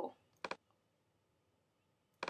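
Two quick computer mouse clicks, close together like a double-click, about half a second in; the rest is quiet room tone.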